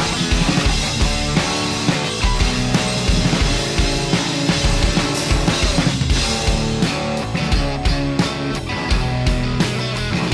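Pop-punk band playing an instrumental passage with no singing: a Telecaster-style electric guitar strummed over bass guitar and a drum kit keeping a steady beat.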